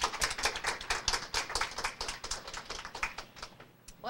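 Audience applauding: many hands clapping in a dense patter that thins out and dies away near the end.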